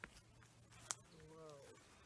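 Near silence with a faint sharp click at the start and a louder one about a second in, followed by a brief faint voice.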